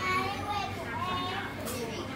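Indistinct chatter of several voices in the background, some of them high-pitched.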